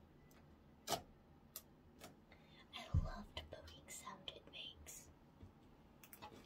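Orange slime being poked and pressed with fingertips: sharp little pops and clicks, one about a second in and the loudest at about three seconds, followed by a quick run of smaller clicks.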